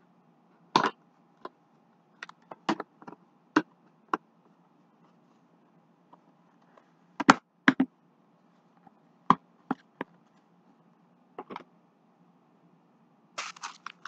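Handling noise from mail items and plastic packaging being picked up and set down: about a dozen short, sharp clicks and taps spread irregularly, with the loudest pair about seven seconds in and quiet gaps between.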